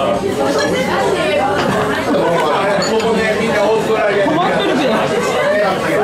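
Busy restaurant chatter: many voices talking over one another at once, a steady din of conversation in a large, crowded room.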